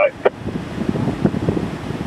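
Wind buffeting the microphone: an uneven, fluttering rumble with no clear tone.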